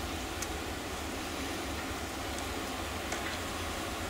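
Steady low hum under an even hiss, with a couple of faint, short clicks.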